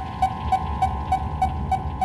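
Background music or sound design: a short pitched pulse repeating evenly about three times a second, like a ticking clock, over a held high tone and a low rumble.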